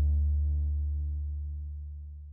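Electric guitar's last low chord ringing out through a tube guitar amp and 4x12 speaker cabinet, fading away smoothly.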